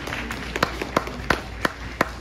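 Scattered applause from a small audience: a few people clapping, with sharp individual claps standing out about three times a second.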